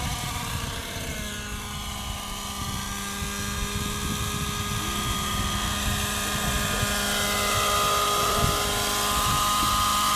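GAUI NX7 radio-controlled helicopter, a nitro (glow-fuel) 700-class machine, running at flight speed with the steady, high whine of its engine and rotors. The pitch dips slightly in the first second, then holds steady as it hovers close by, getting louder toward the end.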